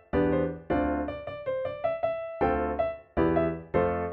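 Solo piano playing an upbeat arrangement, with full chords under a quicker melody. The music breaks off briefly about three seconds in, and a loud chord follows.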